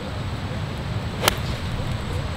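An 8-iron striking a golf ball on a full approach swing: one sharp click a little past halfway through.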